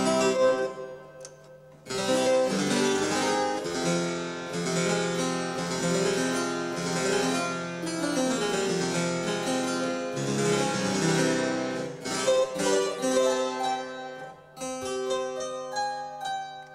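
A 1972 Frank Hubbard harpsichord, a copy of a Ruckers-Taskin ravalement, played: an opening chord rings and dies away, then a continuous run of plucked notes goes on for about twelve seconds, breaks off briefly and starts again near the end.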